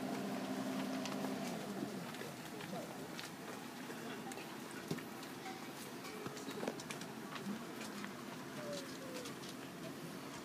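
Faint outdoor ambience with scattered small clicks and a few short bird calls. A held chord of several steady tones dies away in the first two seconds.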